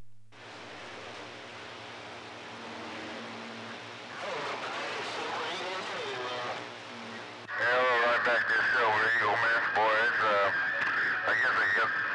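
CB radio receiving after the mic is unkeyed: receiver hiss with faint, garbled voices of distant stations. About seven and a half seconds in, a strong station comes in loud, a muffled, narrow, wavering voice through the radio's speaker.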